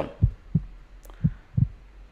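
Heartbeat: low thumps in lub-dub pairs, two beats about a second apart, with a short click between them.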